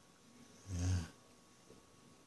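Speech only: a single short, low-pitched spoken "yeah".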